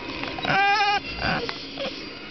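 Bull terrier "singing": one short, wavering, high-pitched howl about half a second long, followed right after by a brief rough breathy sound.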